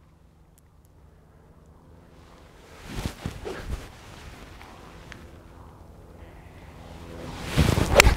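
Two golf iron shots, PING five irons striking the ball, the first about three seconds in and a louder one near the end. Wind on the microphone runs between them.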